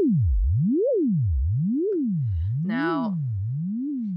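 Logic Pro ES2 software synthesizer holding a note whose pitch sweeps steadily up and down about once a second: LFO 1 modulating the oscillator's pitch. The sweeps grow narrower and the tone slowly fades.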